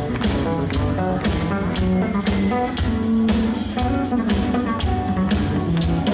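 A live band playing, led by electric guitar over a steady drum-kit beat, heard from within the audience.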